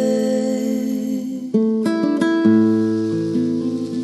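Background music: an acoustic guitar plays sustained chords with no singing, and new plucked notes are struck about a second and a half in.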